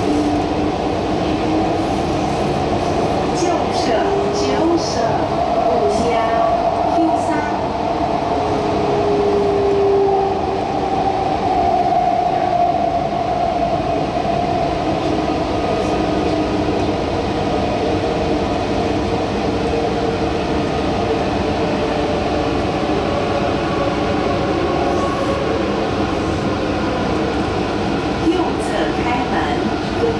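Taichung MRT Green Line metro train running, heard from inside the car: a steady rumble of wheels and track with a motor whine that drifts up and down in pitch.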